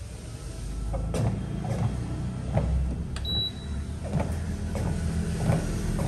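Motorised treadmill running at slow walking speed: a steady low motor hum with footsteps thudding on the belt about every two-thirds of a second. A short high beep sounds a little after three seconds in.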